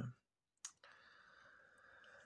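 Near silence in a small room: a single faint click about two-thirds of a second in, then a faint steady hiss.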